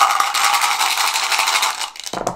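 A handful of dice rattling inside a dice cup as it is shaken: a loud, dense run of rapid clacks that eases off near the end.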